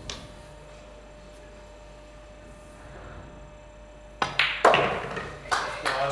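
Quiet hall room tone with a faint steady hum. About four seconds in come sharp pool-ball knocks as the nine ball is shot and pocketed, then audience applause.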